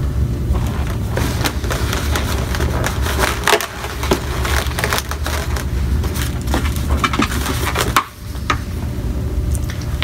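Latex balloons squeaking and rubbing as gloved hands twist and wrap them together, in short, irregular creaks over a steady low hum.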